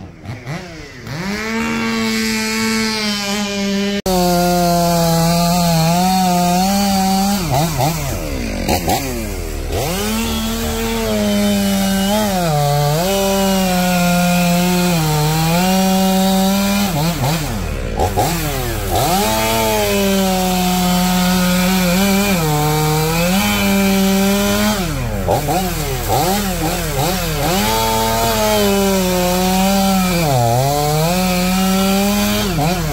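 Two-stroke Stihl chainsaw running at high revs, cutting through a log, its engine pitch dropping and climbing back again and again throughout.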